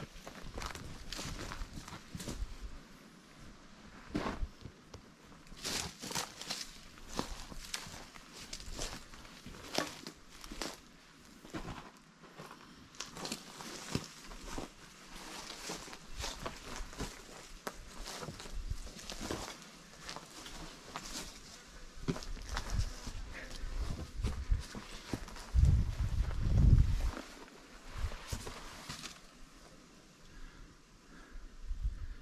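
Footsteps crunching and scuffing over rocky ground through dry grass and sticks, irregular and uneven, with a loud low rumble a few seconds before the end.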